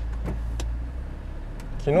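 Car engine running at low speed, heard from inside the cabin as a steady low hum with a few faint clicks, while the car creeps forward out of a parking space.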